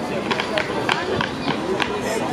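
Clogs striking a wooden dance floor in a step-clog routine: a run of sharp, irregular taps, with voices in the background.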